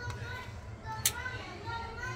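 Background chatter of children and adults talking over a low steady hum, with one sharp click about a second in from the metal tongs handling the fish on its tray.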